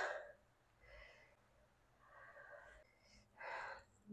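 Near silence, with a person's short intake of breath near the end.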